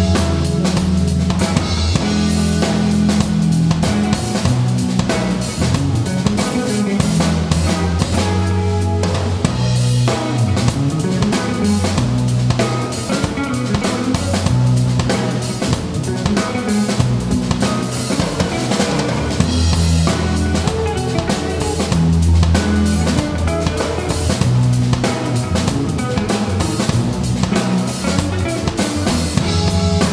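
RotodruM drum kit played in a continuous groove with electric bass and electric guitar, the drums' strokes driving over the bass notes.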